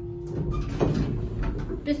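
Old Richmond hydraulic elevator arriving at a floor: a steady hum from the car stops under a second in, then the sliding doors open.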